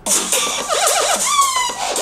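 Music playing at full volume from the Razer Phone 2's front-facing stereo speakers, starting abruptly.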